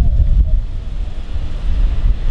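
Wind buffeting an outdoor handheld camera's microphone: a loud, unevenly fluctuating low rumble.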